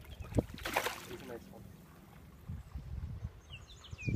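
A hooked smallmouth bass splashing at the surface beside the boat, in one short burst about a second in. Low bumps follow, and a bird chirps a few times near the end.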